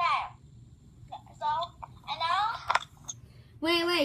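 Children's voices in short snatches of chatter and exclamation, opening with a quick falling squeal and ending with a longer held voice.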